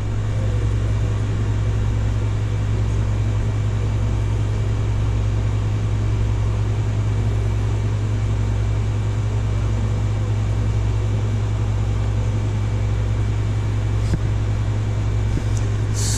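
Steady low mechanical hum with an even hiss behind it, like a fan or other machine running constantly in the room, with a faint click or two near the end.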